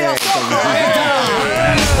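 A single sharp, shot-like crack at the very start, from a toy pistol fired upward, followed by shouting voices.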